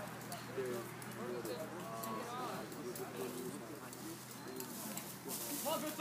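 Indistinct voices of people calling out at a distance, with no clear words, over a low steady hum.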